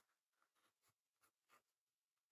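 Very faint scratching of a pen writing on a paper notebook page, a handful of short strokes as numerals are written.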